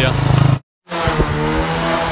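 The end of a spoken word, then, after an edit cut, riding noise picked up by a handlebar-mounted camera on a moving bicycle: steady wind and tyre rumble on a rough lane with a few knocks from bumps, under a steady low engine hum from a nearby motor vehicle.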